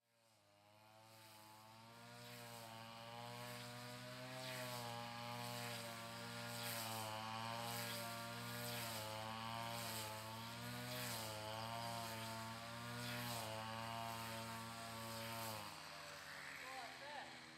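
Small engine of a grass-mowing machine running, its pitch wavering up and down every second or two as the throttle and load change. It fades in over the first few seconds, then holds at a fairly even level.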